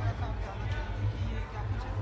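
Background music with a heavy, pulsing bass, under faint voices and chatter.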